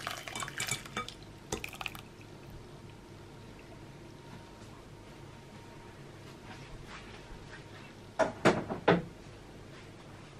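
A pan clinking and scraping against a stainless mesh sieve as boiled mandarin pulp is poured through into a glass bowl, for about two seconds. Near the end, a short cluster of loud clattering knocks of kitchenware.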